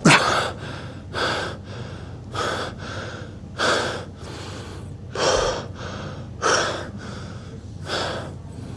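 A man panting heavily and out of breath, with a loud gasping breath about every second and a quarter, each followed by a fainter one; the first gasp, right at the start, is the loudest.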